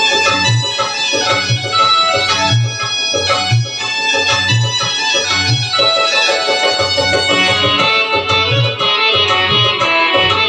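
Chhattisgarhi song music played on an electronic keyboard: a melody and chords over a tabla-style drum rhythm, with a low bass beat about once a second.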